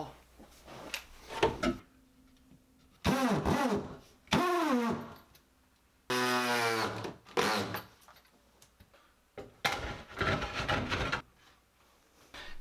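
Cordless drill driving screws into a wooden wall cleat in several short bursts. Each starts abruptly and drops in pitch as it stops.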